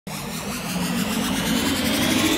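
Intro sound effect for an animated title card: an electric buzzing hum under a rushing noise that swells louder, with a faint rising whine near the end.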